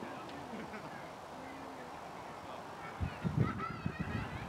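Outdoor ambience, then a series of wavering bird calls from about three seconds in, with low thumps underneath.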